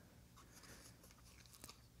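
Near silence: room tone, with a faint tick about three-quarters of the way through.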